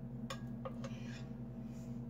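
A metal serving spoon clinking and scraping against the inside of an enamelled Dutch oven while gravy is scooped out: three or four light clicks in the first second, over a steady low hum.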